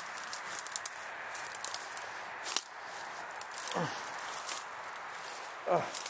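Footsteps through dry woodland undergrowth and leaf litter: scattered small twig-and-leaf crackles with one sharper snap about two and a half seconds in, over a steady background hiss. A short murmur of a man's voice comes just before four seconds in.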